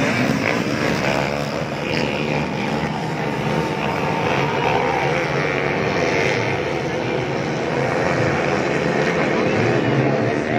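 A pack of motocross dirt bikes racing, their engines blending into a continuous buzz that wavers in pitch as riders rev.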